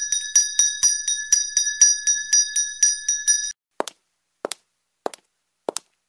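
A school handbell is rung rapidly, about four strokes a second, to signal the start of a lesson. The ringing stops about three and a half seconds in and is followed by four short, sharp clicks.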